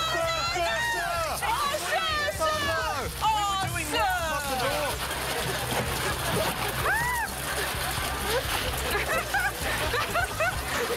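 A mass of ping pong balls clattering as they are shovelled and poured into a car, under overlapping excited shouts and laughter, busiest in the first few seconds.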